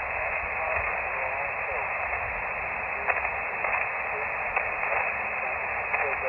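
Elecraft KX2 transceiver receiving single sideband on 20 metres: a steady hiss of band noise with no treble above the voice range, and a weak distant voice faintly audible under the static. The signal is barely readable, a 3-3 report.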